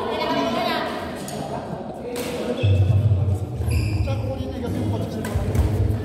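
Players' voices in a badminton hall, with a few sharp knocks and low thuds from play on the court.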